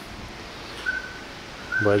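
Quiet indoor room tone with a short, faint high-pitched chirp about a second in; a man's voice starts near the end.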